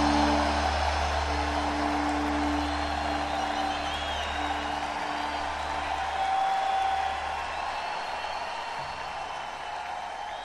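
A live rock band's closing held chord, electric guitar over bass, ringing out and dying away over the first several seconds as the song ends. A crowd cheers and whistles underneath and carries on once the band stops.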